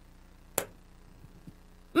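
A single sharp click about half a second in, with a much fainter tick later, over quiet room tone.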